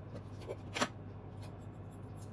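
Utensil handling at a clay mortar: a faint click about half a second in and a sharper one just after, as a plastic spoon knocks and scrapes against the clay, over a steady low hum.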